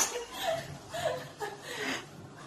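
A person chuckling softly: a few short laughs, about one every half second.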